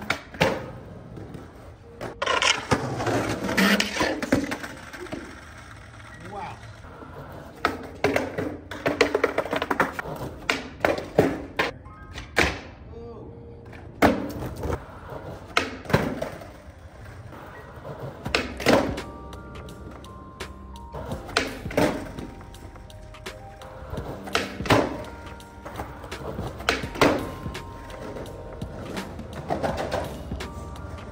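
Skateboard on concrete: wheels rolling and the board popping and landing in repeated sharp clacks, over background music.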